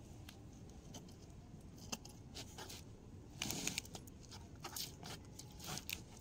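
Kitchen knife cutting raw chicken on a plastic chopping board: faint scattered taps and ticks of the blade, with a louder scraping crunch about three and a half seconds in.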